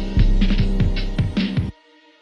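A hip hop beat playing back from the DAW: a sampled loop with a deep bass and a drum pattern of booming kicks and crisp hits several times a second. It cuts off suddenly near the end as playback stops, leaving only faint held tones.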